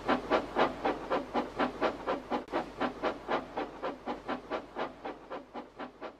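Steam locomotive chuffing steadily, about four chuffs a second, growing fainter as the train pulls away.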